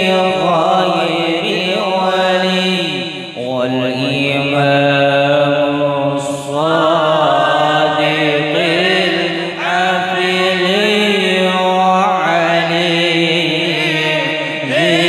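Group of men chanting an Arabic devotional syair unaccompanied, a lead voice carrying a wavering, ornamented melody over others holding a lower note; the phrases break off briefly every few seconds.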